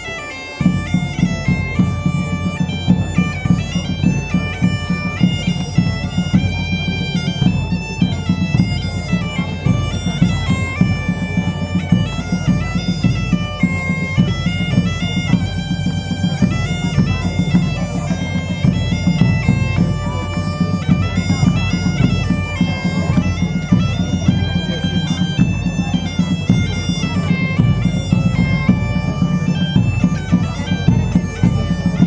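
Bagpipe playing a lively dance tune over a steady drone, with a drum beating along. The music starts about half a second in.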